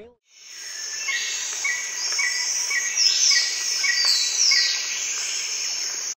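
Outdoor nature ambience of insects and birds, fading in after a moment of silence. Short chirps repeat about twice a second, with a few falling whistled calls near the middle.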